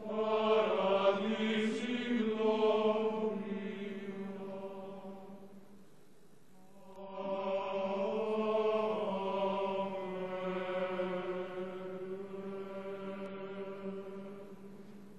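Male choir singing a slow sacred chant in two long, sustained phrases, with a brief lull about six seconds in.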